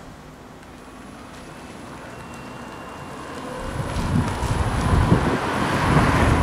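Nissan Leaf electric car driving past, its tyre and road noise swelling from quiet to loud over the last two seconds as it goes by.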